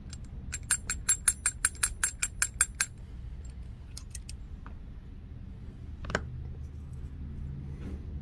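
Deer hair being stacked in a hair stacker: the stacker is tapped on the bench about a dozen times in quick succession, roughly five taps a second, each a sharp click with a ringing metallic note, to even the hair tips. A few fainter clicks follow, and a single click a few seconds later.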